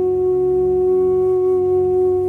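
Bansuri (Indian bamboo flute) holding one long, steady note over a low, steady drone.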